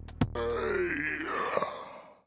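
Electronic beat from a Reaktor Blocks patch: one more drum-machine kick, then the drums stop and a pitched sampled sound takes over, sliding down in pitch and curving back up before fading out near the end.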